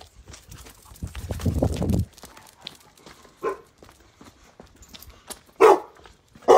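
A dog barking: a faint short bark about three and a half seconds in and a loud one near the end. A rough scuffing noise runs for about a second before them.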